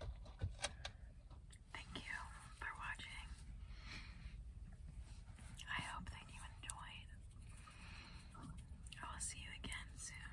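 A woman whispering, with a few sharp clicks in the first second.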